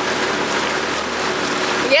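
Steady rush of water and wind from a pontoon boat moving across a lake, with a faint low motor hum beneath it.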